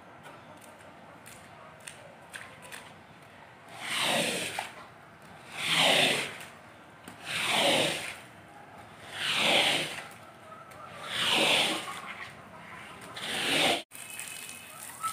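A floor wiper (squeegee) is pushed in strokes across a soaked carpet, swishing and scraping soapy water off it to clear out the detergent. There are six strokes, each about a second long, roughly every two seconds, starting about four seconds in.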